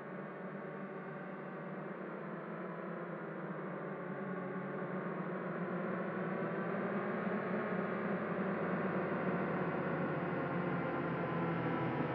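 A low, dense synthesized drone swelling steadily louder and brighter, a cinematic build-up in the soundtrack of a title sequence.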